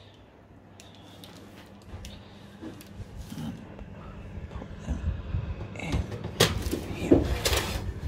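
Metal baking tray being slid into an oven onto the shelf, scraping and clattering, getting louder from about five seconds in with two sharper knocks near the end.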